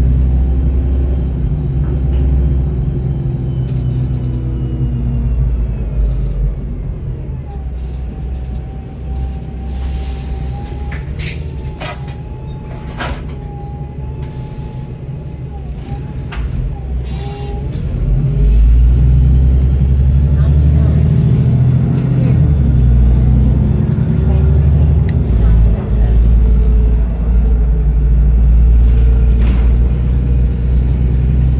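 Arriva London double-decker bus heard from the lower deck: the engine note falls as the bus slows. It comes to a quieter stop with a steady whine and clicks and hiss from the brakes and doors. About eighteen seconds in, the engine comes back in loudly and rises as the bus pulls away.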